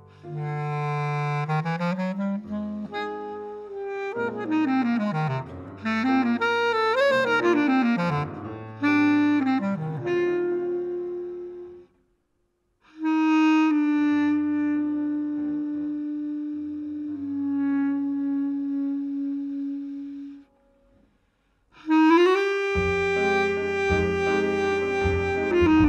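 Bass clarinet playing solo in a jazz piece: low notes and quick runs sweeping up and down, a brief pause, then long held notes. Near the end the piano and the rest of the band come in together.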